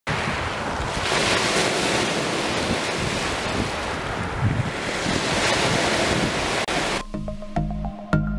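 Small waves washing up over a pebble beach: a steady rush of surf that swells twice. About seven seconds in, it gives way to music with a beat.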